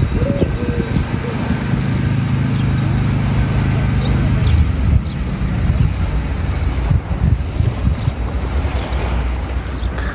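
Wind buffeting the microphone, a loud, uneven low rumble. A low steady drone sits under it for about three seconds, starting a second or two in.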